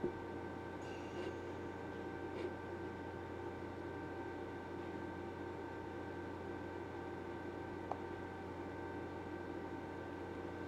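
Low, steady electrical hum made of several constant tones, with a few faint clicks scattered through it.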